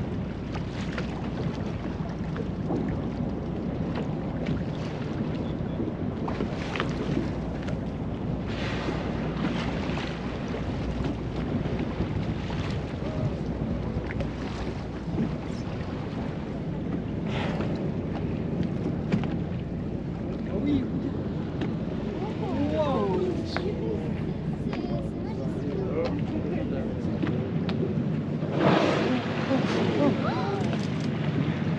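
Boat engine running steadily under wind buffeting the microphone and the wash of choppy sea, with faint voices in the background. Near the end there is a louder rush of noise lasting about a second.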